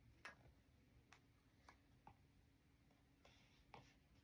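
Faint taps of a stylus tip on a tablet's glass screen: about five light, irregular clicks, with a brief soft scrape of a drawn stroke just before the end.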